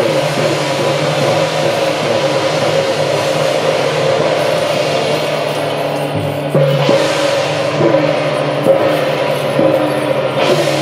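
Temple-procession percussion music for a Guan Jiang Shou troupe: drums, gongs and cymbals beat steadily over a held tone, with repeated gong strokes that fall in pitch.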